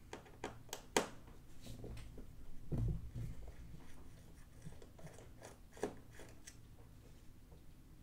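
Scattered faint clicks and taps of a small screwdriver and fingers handling the metal SSD cover inside an opened Surface Laptop 4. The sharpest click comes about a second in, and a duller knock follows near three seconds.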